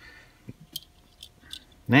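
Faint light clicks and handling noises of small polymer and metal magazine parts being picked up and moved on a work mat.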